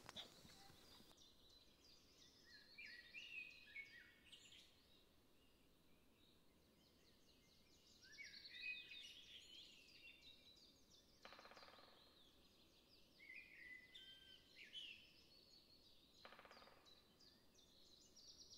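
Faint woodland birdsong: small songbirds singing short, thin, warbling high-pitched phrases in three spells, with two brief dry rattling calls between them.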